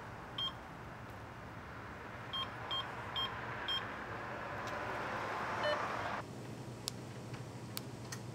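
Short electronic beeps from a gas pump's keypad, one and then four more in quick succession, over a steady hiss that cuts off abruptly about six seconds in.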